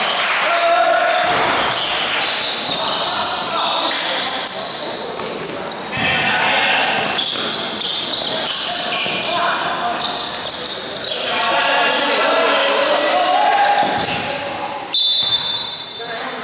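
Basketball game in a gymnasium: a ball bouncing on the court, shoes squeaking and players and spectators shouting, echoing in the hall. A short, loud, high whistle blast, a referee's whistle, comes about a second before the end.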